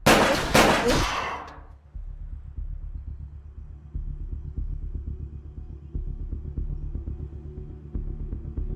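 Film soundtrack: a loud sudden hit opens it and fades over about a second and a half, then low, pulsing suspense music follows with a heavier beat about every two seconds.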